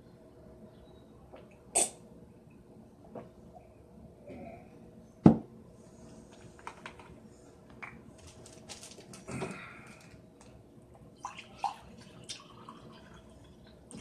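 Someone drinking from a bottle of water: scattered small clicks and handling sounds from the bottle, with a sharp knock about five seconds in as the loudest sound, over a faint steady hum.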